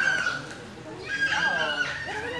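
High-pitched voice: two long held cries, one at the start and one in the second half, with lower voice sounds between them.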